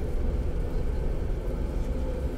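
Steady low rumble of a bus running, heard from inside the passenger cabin.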